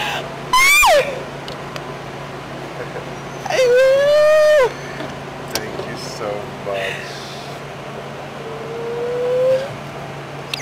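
A woman squealing and crying out with delight in three long high cries: a sharp rising-and-falling shriek, a long held cry about halfway through, and a slower rising one near the end. A low steady hum runs underneath.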